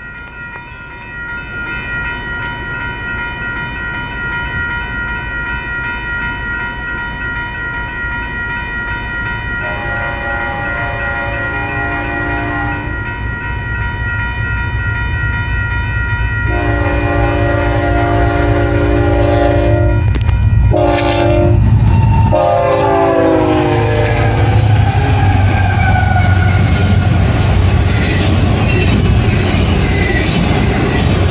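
Approaching freight train's multi-chime locomotive horn sounding the grade-crossing signal (long, long, short, long), the last note sliding down in pitch as the locomotive passes. Under it a railroad crossing bell rings steadily. The rumble of the train grows louder and fills the last several seconds as the cars roll by.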